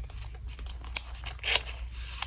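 Paper and card handled close to the microphone: soft rustling, a sharp tick about a second in, and a brief louder rustle of paper about three quarters of the way through as a paper tag is slid into a paper pocket.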